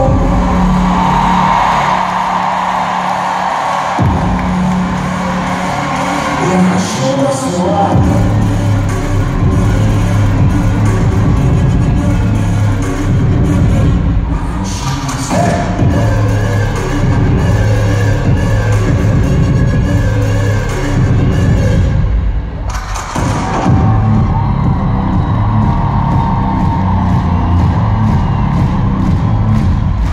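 Pop-dance music played loud over an arena sound system, recorded from the stands with crowd noise under it. Deep bass comes in about four seconds in and a steady beat from about eight seconds, with a short drop a little after the twenty-second mark.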